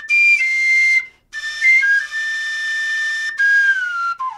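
A flute playing a slow melody with long held high notes and small slides between them, in phrases broken by short pauses.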